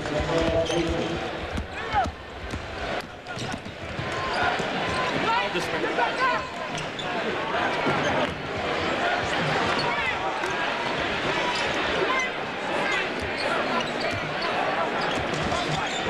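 Arena game sound of a basketball game: the ball bouncing on the hardwood court and sneakers squeaking, over a murmuring crowd.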